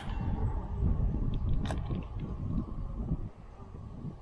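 Wind buffeting the camera's microphone, a heavy low rumble that eases after about three seconds. Two sharp clicks, one at the start and one about halfway through.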